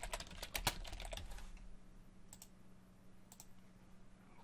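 Typing on a computer keyboard, quietly: a quick run of keystrokes in the first second and a half, then a few single clicks spaced out later.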